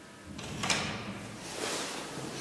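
Elevator's hinged wooden landing door being unlatched and worked: a sharp click a little under a second in, with rushing, scraping noise around it and again near the end.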